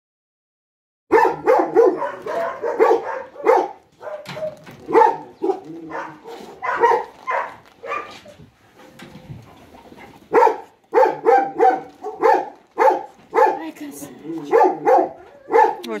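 A dog barking in quick repeated barks, about three a second. The barking starts about a second in and eases off for a couple of seconds midway before resuming.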